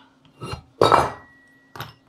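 Metal radio housing and a screwdriver being handled and set down on a workbench: three knocks and clinks, the loudest about a second in, followed by a faint thin ringing tone.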